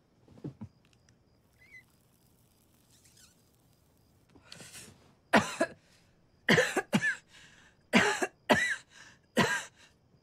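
A woman coughing on marijuana smoke after a drag from a joint. A quiet breathy exhale comes about four and a half seconds in, then about six hard coughs in quick clusters.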